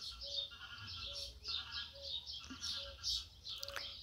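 A bird calling over and over, a short call about once a second.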